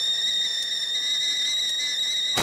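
Steady high-pitched steam whistle from a cartoon cooking machine making popcorn, held at one pitch: the popcorn is nearly ready.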